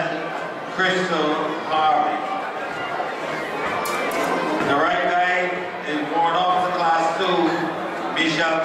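Speech: people talking throughout, the words not clear.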